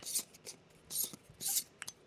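Metal lens threads rubbing as a 35 mm taking lens is unscrewed from an SLR Magic Anamorphot 2X anamorphic adapter: three short scraping rubs, one per turn, with a couple of faint clicks near the end.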